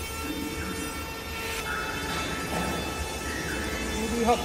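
A facial tissue folding machine running steadily: an even mechanical drone with a constant low hum and several steady tones over it.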